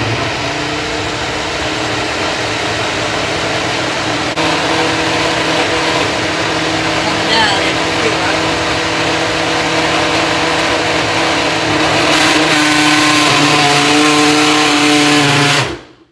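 Ninja personal blender running, blending a fruit-and-milk smoothie in its push-down cup: a loud, steady motor whir whose tone shifts a little late on, stopping suddenly near the end.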